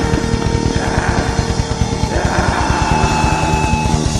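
A heavy metal band playing live: distorted electric guitars over very fast, rapid-fire drumming.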